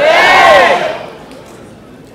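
A crowd shouting back in unison in answer to a speaker's call: one loud shout in the first second that fades away over the next second.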